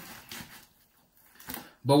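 A quiet pause with two faint, brief handling noises: one shortly after the start and one just before the end. A man's voice resumes near the end.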